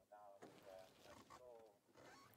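African wild dogs giving a series of faint, short, pitched calls, several in quick succession: their excited vocalising while they mill around below a treed leopard.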